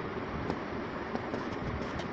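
Steady rumbling background noise with a few faint clicks, with no speech.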